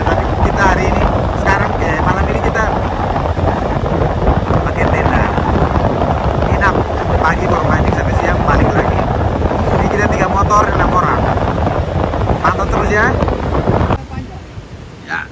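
Wind buffeting the microphone on a moving motorcycle at road speed, a loud, steady rush with engine and road noise underneath.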